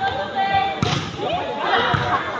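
A volleyball in play during a rally, with a sharp hit shortly before a second in and duller thumps, over spectators' voices that grow louder after the hit.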